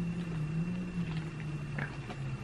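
A woman's low, drawn-out hum, held steady and sinking slightly in pitch, with a few faint ticks over it.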